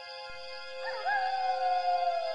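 Morin khuur (Mongolian horsehead fiddle) playing: over a steady held lower note, a higher bowed note enters about a second in with a quick wavering slide, then is held, sagging slightly in pitch.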